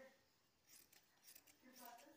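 Faint snipping of large fabric shears cutting through cotton dress cloth, a few short cuts in the second half.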